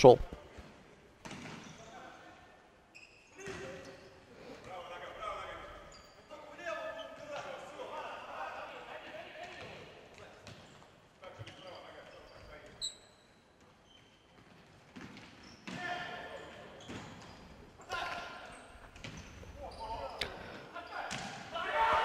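Faint sounds of an indoor futsal game in a large, echoing sports hall: the ball being kicked and bouncing on the wooden court, and players calling out to one another.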